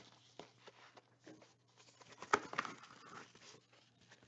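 Trading card pack wrapper being torn open and crinkled in the hands: faint scattered crackles, with the loudest rustle a little past two seconds in.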